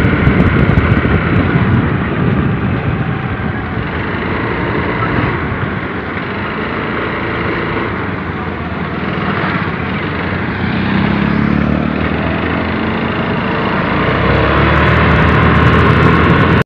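Motor scooter being ridden along a road: a steady engine drone with heavy rushing wind noise on the microphone, growing louder over the last few seconds.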